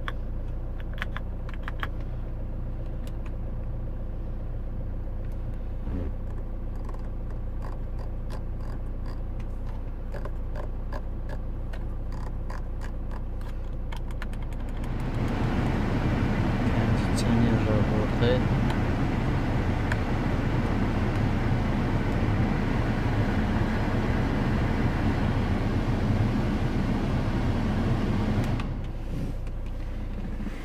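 Hyundai Santa Fe's climate-control blower fan switched on about halfway through, blowing steadily at high speed, then dropping off near the end. Before it, a low steady hum from the idling car and a scatter of light clicks from the dashboard buttons.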